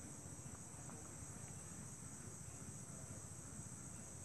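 Faint, steady high-pitched chirring of insects.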